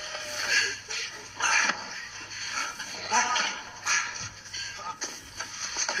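Soundtrack of a TV drama playing in the room: background music with noisy bursts recurring about once a second, and faint voices.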